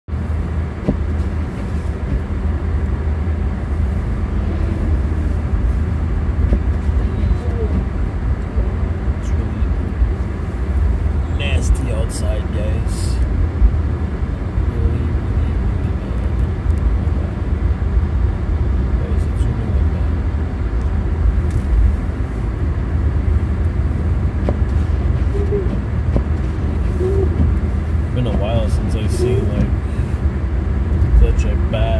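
Steady low rumble of road and engine noise heard inside the cabin of a driving Infiniti Q50 Red Sport 400, with a few brief clicks about twelve seconds in and again near the end.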